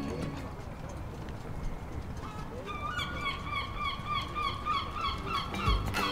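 Low, steady outdoor background noise. From about two seconds in, a bird gives a rapid run of short, repeated calls, about three a second.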